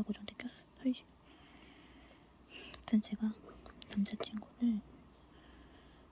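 Soft murmured or whispered speech in short, low syllables, with faint clicks in between.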